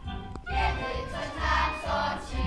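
A group of children singing together over a recorded backing track with a steady bass beat; the voices come in about half a second in.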